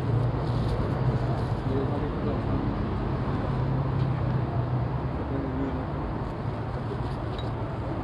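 Steady street traffic noise with a low engine hum, and faint voices now and then in the background.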